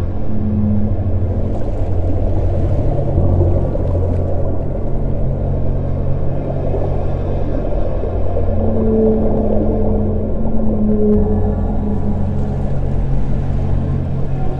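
Ambient meditation music with whale calls layered into it: a steady low drone, with long held call-like tones rising out of it about eight seconds in.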